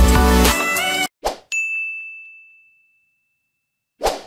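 Background music stops about a second in. A short whoosh follows, then a single high chime-like ding that rings out and fades over about a second, the kind of sound effect used on a like/subscribe outro animation.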